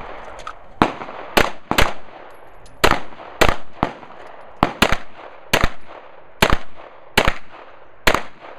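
Pistol shots fired in a timed IDPA course of fire: about ten sharp reports at an uneven pace, several coming in quick pairs about half a second apart, with longer pauses between as the shooter moves between targets.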